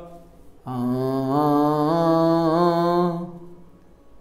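A man singing one held 'aa' note with a deliberately nasal tone, demonstrating the fault of singing through the nose, which counts as out-of-tune singing even when on pitch. The note starts a little under a second in, wavers slightly in pitch, and stops about three seconds in.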